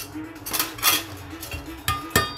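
A few sharp metallic clinks and scrapes, the loudest near the end with a brief ring, like a steel blade or tool being handled against hard things. Under them runs a faint, steady, evenly repeating pulse.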